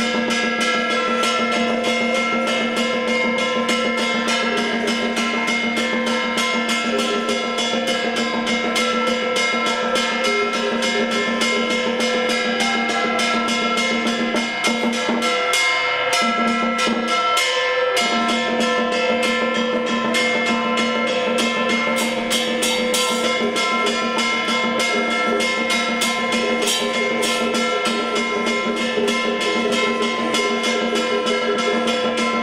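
Taoist ritual accompaniment: rapid, continuous drum and wood-block strikes over long, steady held tones.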